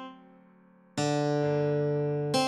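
Guitar melody line: a plucked note dies away into a rest of nearly a second, then a low D note is plucked about a second in and held, tied over.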